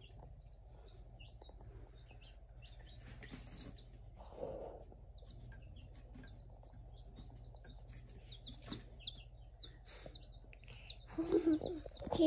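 Baby chicks peeping: repeated short, high-pitched peeps in quick clusters, soft and faint.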